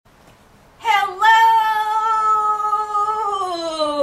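One long drawn-out sung note from a voice. It starts about a second in, holds steady, then slides slowly down in pitch near the end.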